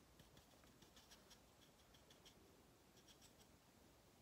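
Faint, irregular scratchy ticks of a makeup brush working in a jar of loose setting powder.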